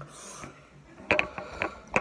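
Handling noise of a hand taking hold of the recording phone: a short hiss just after the start, then a quick run of sharp clicks and knocks, about five in under a second, near the end.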